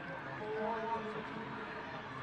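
Field sound at a soccer stadium: a thin crowd murmur, with a distant voice calling out and holding a note for most of a second, about half a second in.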